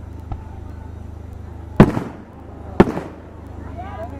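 Aerial fireworks shells bursting: a faint pop, then two loud sharp bangs about a second apart, each with a short echoing tail.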